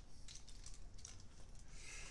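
Faint rustling and a few soft clicks of over-ear headphones being handled and pulled off.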